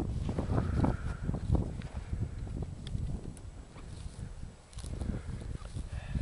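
Wind buffeting the microphone in an uneven low rumble, with a few faint taps and rustles.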